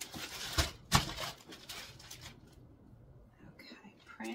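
Plastic poly mailer crinkling as it is handled and moved, with two knocks about half a second apart as the package meets the desk, the second the louder, about a second in; then quiet handling sounds.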